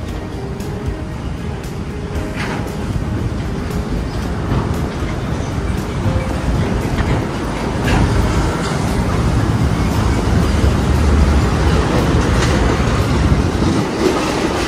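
Steady road traffic noise from a busy multi-lane boulevard, a dense low rumble that grows gradually louder through the second half.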